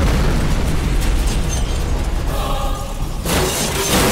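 Film sound effect of an explosion: a loud blast with a heavy low rumble and flying debris. A second sudden blast or crash hits a little over three seconds in.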